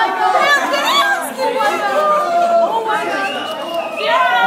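Several people talking over one another in excited chatter.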